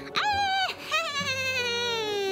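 A woman's voice imitating a witch's cackle: a short high shriek, then a long high-pitched call that slides slowly down in pitch.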